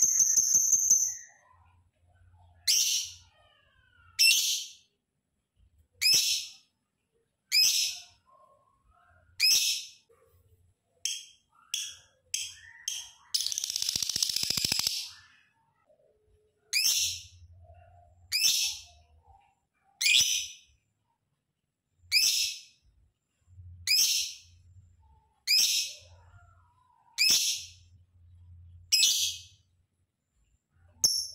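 Lovebird giving short, shrill, high-pitched calls, repeated about every second and a half. About halfway through, a quicker run of calls leads into a longer harsh, chattering burst.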